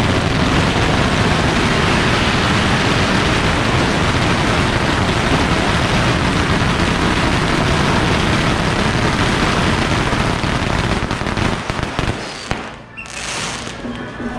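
Strings of firecrackers going off in a dense, continuous rapid crackle, loud throughout and thinning out near the end.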